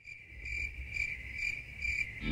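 Crickets chirping at night: a steady high trill that swells about twice a second, fading in from silence, over a faint low rumble.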